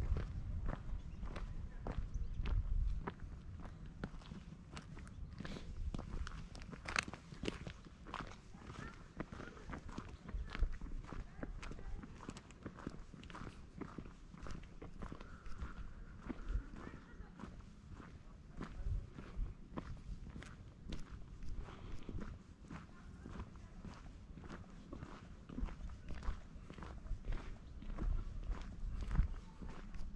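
Footsteps of a person walking along an asphalt road at a steady pace, each step a short scuff or click. A low rumble runs underneath, strongest in the first few seconds.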